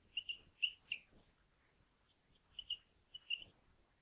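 Marker pen squeaking faintly on a whiteboard as words are written: a series of short, high chirps, four in the first second and a few more later on.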